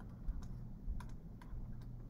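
A handful of faint, irregular clicks from the pen input as a figure and brackets are handwritten on a digital whiteboard.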